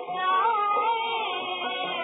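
A 1952 Hindi film song recording: a high, wavering melody over the accompaniment, with a dull sound that has no top end.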